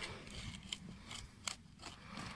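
Metal garden fork being worked into stony soil: faint gritty crunching, with a few sharp clicks as the tines grate on stones.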